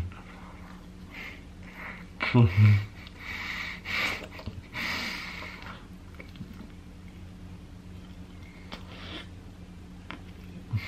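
A person with a mouth stuffed with marshmallows gives a short muffled laugh a little over two seconds in, then breathes hard through the nose in a few heavy, snorting puffs that die away to faint breathing.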